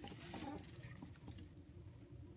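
Very faint rustling and a few small ticks of a hand handling a pitcher plant's pitcher close to the phone, almost silence.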